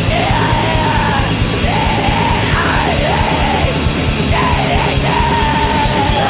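Blackened punk band playing: distorted guitars, bass and drums at a steady pace, with a woman yelling the vocal in long held phrases that dip and swoop between notes.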